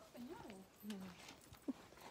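A quiet stretch holding only a soft spoken "no" and faint voice sounds, with one small click near the end.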